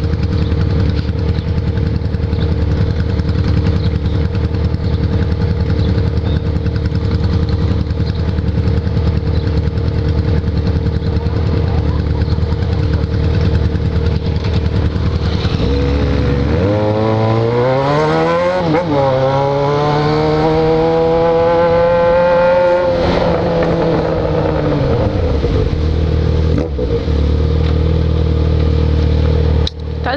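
Yamaha XJ6's inline-four engine idling steadily through a de-baffled exhaust, then pulling away about halfway through: the revs climb, dip at a gear change, climb again, and fall back as the throttle closes, settling to a steady note.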